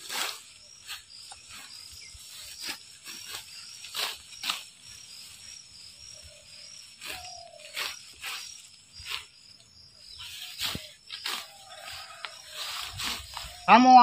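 Grass being cut by hand with a sickle: an irregular run of short slicing strokes, about one to two a second, with the rustle of the grass being gathered. Crickets shrill steadily behind.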